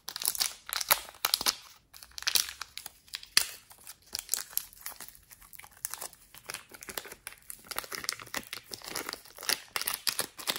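Thin clear plastic bag crinkling as soft pink slime is squeezed out of it and pulled away from its sides, a continuous run of crackles.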